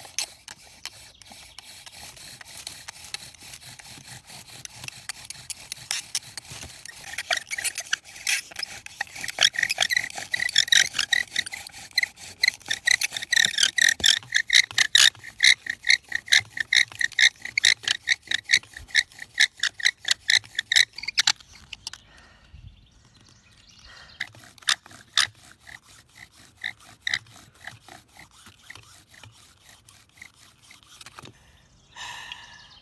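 Bow drill in use: each stroke of the bow spins a wooden spindle in a notched wooden fireboard with a rhythmic, squeaky rasp, about two strokes a second. It grows louder and faster, stops briefly about two-thirds through, then resumes more faintly. The friction is grinding wood powder in the notch to build up enough heat for an ember.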